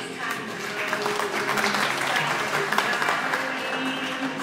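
Audience applauding over the performance music; the clapping starts just after the beginning, is loudest in the middle and thins out near the end.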